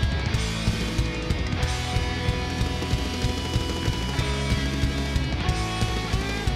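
Rock music with electric guitars and a drum kit keeping a steady beat.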